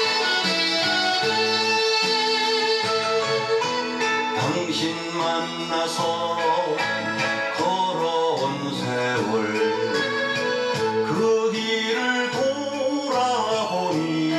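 A Korean popular song performed with full backing music: an instrumental passage, then a man's singing voice comes in over the accompaniment about four seconds in.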